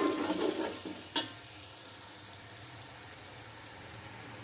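Onions and tomatoes frying in oil in an aluminium pot: a steady sizzle, with one sharp knock about a second in.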